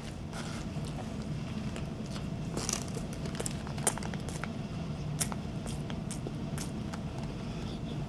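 A person biting into a Whopper-style burger and chewing it close to the microphone, with scattered small wet clicks and squishes of the mouth and bun.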